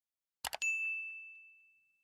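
Two quick click sound effects about half a second in, followed by a bell ding on one high tone that fades over about a second and a half. This is the notification-bell sound of a subscribe-button animation, marking the bell being switched on.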